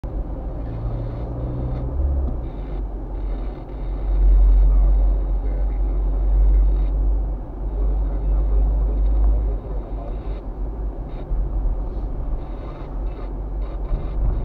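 Cabin noise in a moving car: a steady low rumble of engine and tyres on the road, swelling louder about four seconds in and easing off a few seconds later.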